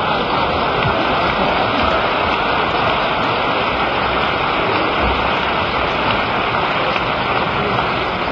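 Large audience applauding, a steady unbroken round of clapping.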